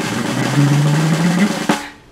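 A drum roll of nearly two seconds, a steady dense rattle that stops abruptly just before the end: the build-up before a reveal.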